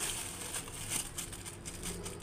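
Faint pattering of lye granules falling into a ceramic mug of water as they are spooned out of a crinkly plastic bag, with small scattered clicks.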